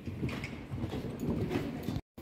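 Hoofbeats of a ridden horse on the sand footing of an indoor riding arena: a run of uneven, dull thuds.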